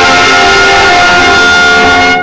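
Brass band of trumpets, trombones and tuba playing loud held notes, the chord changing a few times.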